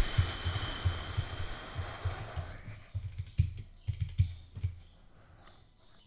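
Typing on a computer keyboard: an irregular, quick run of keystrokes, each a click with a low thud, thinning out and stopping about a second before the end, over a soft hiss in the first two seconds.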